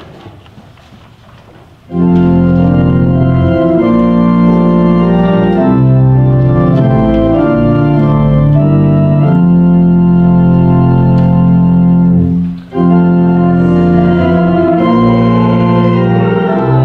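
Organ playing the psalm tune in held chords, coming in about two seconds in, with a short break between phrases about three-quarters through.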